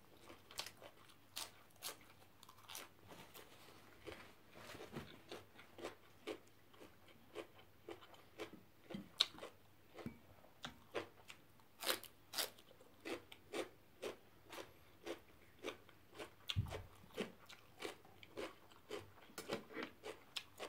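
Close-up chewing of crunchy raw celery: a steady run of short crunches, about one to two bites a second.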